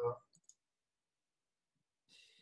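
A man's brief "uh", then two faint short clicks close together about half a second in, followed by near silence.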